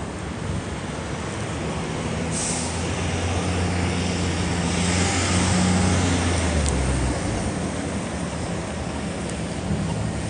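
A heavy flatbed truck driving past close by, its engine drone swelling to a peak around five to six seconds in and then dropping away, over steady city traffic noise. A sudden hiss sets in about two and a half seconds in and runs under the pass.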